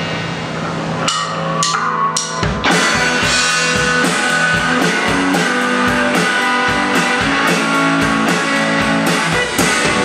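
Live electric guitar and drum kit starting a rock song: a few sharp drum hits about a second in, then the full beat comes in near three seconds with steady drum strikes under the guitar.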